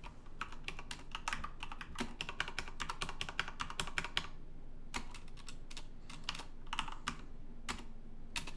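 Typing on a computer keyboard: a fast run of keystrokes, a pause of under a second a little past halfway, then another run of keystrokes.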